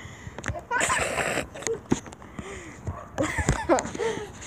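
Kids laughing and making breathy, wordless vocal sounds, with a few short clicks and knocks. There is a breathy burst about a second in and voiced sounds near the end.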